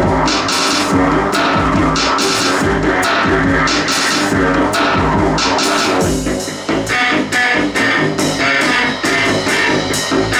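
Live industrial electro-punk music: an acoustic drum kit played with sticks over electronic keyboard sounds. About six seconds in the music dips briefly, then carries on with a steadier, evenly spaced pattern of cymbal hits.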